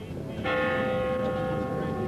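A church bell struck once about half a second in, its note ringing on and slowly fading.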